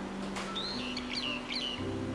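A bird chirping a short phrase of about four quick, high notes over soft background music.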